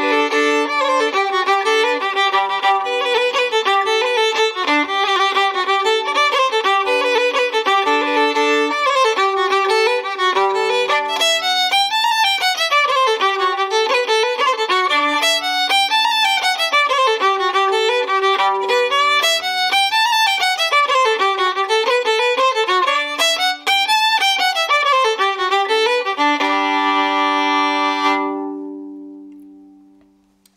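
Solo fiddle playing a fast traditional Irish tune, with a steady second string sounding under the running melody. Near the end it settles on a long held chord that rings out and dies away.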